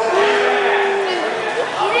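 Spectators' voices in a gymnasium: one long drawn-out shout held for about a second, dropping in pitch as it ends, with other voices calling over it.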